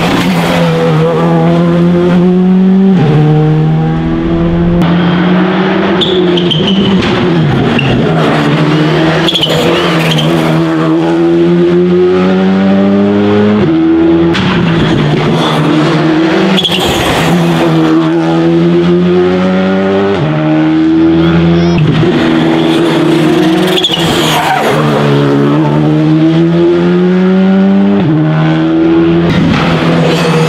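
Škoda Fabia Rally2 rally cars, turbocharged 1.6-litre four-cylinders, passing one after another at racing speed. The engines rev hard, climbing in pitch and dropping sharply at each gear change or lift, several times over.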